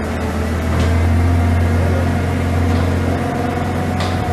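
Hyster 194A forklift's six-cylinder gas engine running steadily, a low even hum with no revving.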